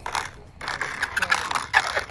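A small RC model plane's landing gear wheels touching down and rolling out on rough asphalt: a scratchy scraping rustle that grows stronger about half a second in and keeps going until the plane stops.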